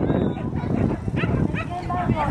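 A dog barking in a few short, high yips from about a second in, over a steady outdoor background with voices.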